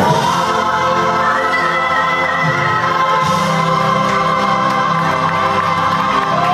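Gospel-style music with a choir singing long held notes, played loud and steady.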